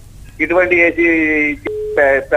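A caller's voice over a telephone line drawing out a vowel, then near the end a click and a short, steady single-pitch beep on the phone line.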